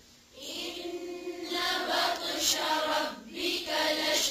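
Melodic chanted Quran recitation in Arabic with long held notes. A breath pause falls at the start and another brief one about three seconds in.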